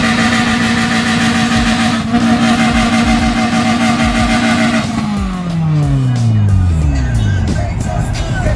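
Honda Civic four-cylinder engine held at high revs for about five seconds, then falling steadily back down as the throttle is released. This is a hard free-rev that onlookers expect to blow the head gasket.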